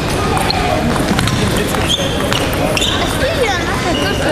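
Table tennis ball bouncing with light, sharp clicks, heard amid voices in a large hall.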